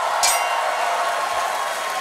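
Segment-title sound effect: a sustained whooshing hiss over a steady tone, with a bright clink about a quarter second in.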